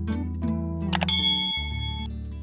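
Subscribe-button animation sound effect: a mouse click about a second in, followed by a bell ding that rings on and fades away, over background music.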